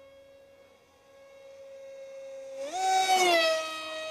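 High-pitched whine of a small RC park jet's 2212/5T 2700 kv brushless outrunner motor spinning a Gemfan Flash 6042 two-blade prop on 3S. It grows louder over the first few seconds, jumps up in pitch and is loudest about three seconds in, then drops back in pitch.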